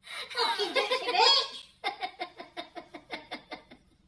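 A person's high voice, then a run of laughter, about seven 'ha's a second, trailing off near the end.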